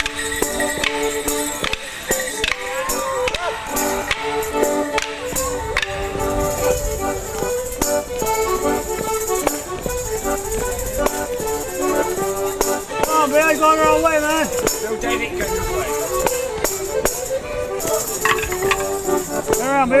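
Live music for a Border Morris dance, with the clack of the dancers' wooden sticks striking together over the tune.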